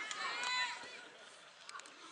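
Shouting voices of rugby players and sideline spectators during play. The shouts are loudest in the first second, then fade to quieter calls, with a few short clicks near the end.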